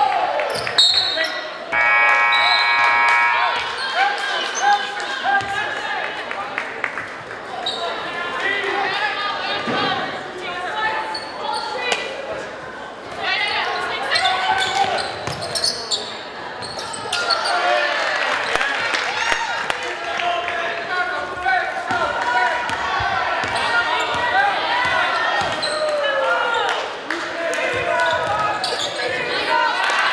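Basketball game in a gymnasium: a ball bouncing on the hardwood floor amid players' and spectators' voices calling out, echoing in the large hall. A short steady tone sounds about two seconds in.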